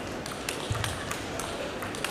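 Table tennis ball clicking: several sharp, quick ticks of the ball on bats and table, over the steady murmur of a large sports hall.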